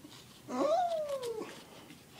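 A single drawn-out wordless vocal sound, an "uh" from a person, that rises in pitch and then slides down over about a second.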